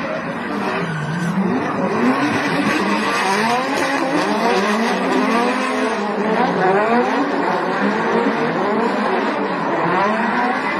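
Several drift cars sliding in tandem, their engines revving up and down over and over at high rpm, with tyre squeal and skidding.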